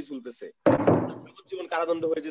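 A single loud thump a little after half a second in, dying away over most of a second, between stretches of a voice speaking.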